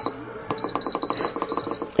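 Instant Pot IP-LUX control panel beeping as the cooking time is stepped up with its buttons: a quick run of about six short high beeps, closer together toward the end.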